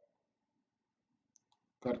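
Quiet room tone with two faint, short clicks about a second and a half in, followed at the very end by a man starting to speak.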